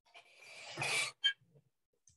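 A person's breath: a rush of air that grows louder for about a second and stops, followed by a brief short sound.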